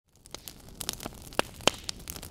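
Fire crackling sound effect: a steady hiss with scattered sharp pops, the loudest two coming a little after halfway.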